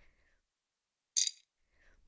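A single short, bright clink of a jelly bean dropping into a glass mixing bowl, about a second in, with silence around it.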